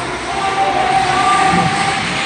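Steady game noise of an ice hockey game in an indoor rink: skates on the ice and the hall's echo, with a held tone running for about a second through the middle.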